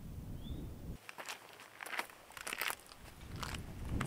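Wind on the microphone for about a second, then a run of crunching footsteps on loose rhyolite rock and gravel.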